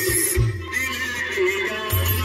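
Loud music with a heavy bass line, playing from a car's sound system.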